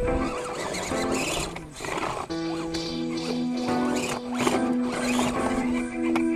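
Background music with long held notes that change pitch every second or so.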